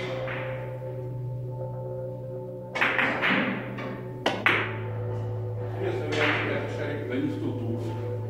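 Hard Russian billiards balls clacking: a knock about three seconds in, then a cue-tip strike on the ball followed at once by a sharp ball-on-ball click just over four seconds in, over steady background music.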